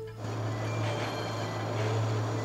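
A steady low hum under an even wash of hissing noise that comes in a moment in, with a faint high steady tone.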